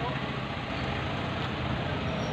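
Steady street noise with the low, even rumble of a vehicle engine running.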